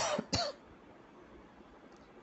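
A man coughing: two short coughs in quick succession in the first half second, followed by near silence with faint background hiss.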